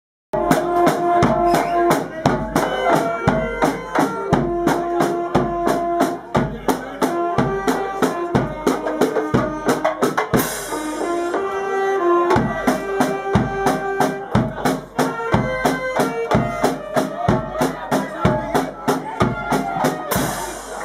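A brass band playing a tune, horns carrying the melody over a steady beat of snare drum and bass drum; the music starts right at the beginning.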